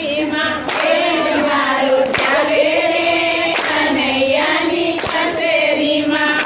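A group of women singing a Gujarati devotional song together in unison, with hand claps keeping time about every second and a half.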